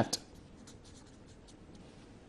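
Marker pen writing on a board: faint short strokes and taps as the last words of a sentence are written.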